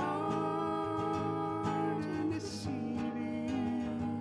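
Acoustic guitar strummed under a man and a woman singing long held notes in harmony.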